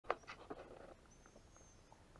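Handling noise close to the microphone as the camera starts recording: a sharp click at the very start, then a few faint taps and a brief rustle. A faint, thin, high steady whistle follows for about the last second.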